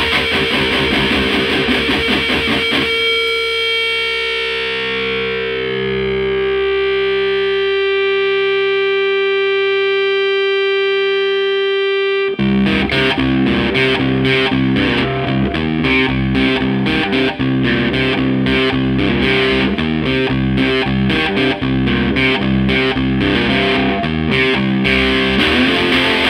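Baritone cigar box guitar played through a distorted ENGL Screamer 50 amplifier. A short burst of riffing gives way to one long sustained tone ringing for about nine seconds, then a busy rhythmic riff cuts back in abruptly about twelve seconds in.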